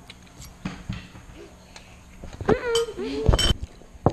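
Eating utensils clicking and clinking against a ceramic bowl, a few light separate clicks, then a short wordless vocal sound about two and a half seconds in and a couple of louder knocks near the end.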